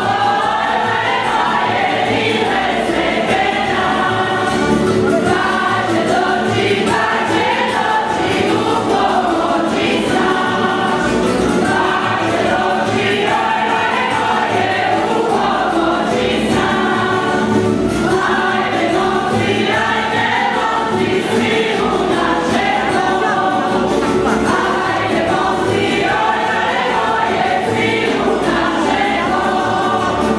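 A group of voices singing a Croatian folk song together, with a tamburica band of plucked strings and bass playing along, steady throughout.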